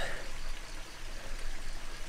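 Low, steady hiss of water in the open, with no distinct events.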